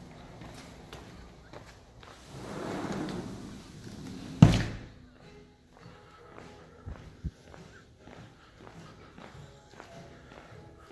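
A sliding glass patio door rolling along its track and shutting with a single loud thud about four and a half seconds in. Faint footsteps follow, with soft background music.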